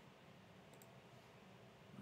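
Near silence: faint room tone with two faint computer-mouse clicks close together, about three-quarters of a second in.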